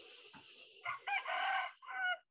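A bird calling: one drawn-out, high-pitched call about a second long, with a short further note near the end, over a faint steady high hiss.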